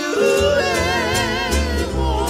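Hawaiian music: a voice singing in a high, yodel-like falsetto with wide vibrato, leaping up in pitch right at the start, over guitar accompaniment with bass coming in about half a second in.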